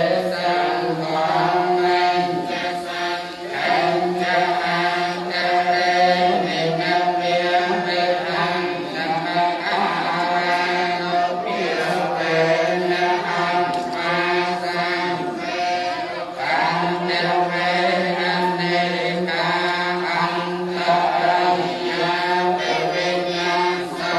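Buddhist chanting by a group of voices, a steady unbroken recitation on held pitches with a constant low tone underneath.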